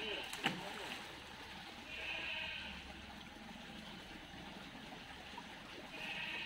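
River water splashing and churning in short hissing bursts, with one sharp slap about half a second in.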